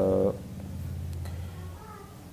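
A man's voice: the end of a drawn-out word, then a low, steady, closed-mouth hum of about a second and a half as he pauses.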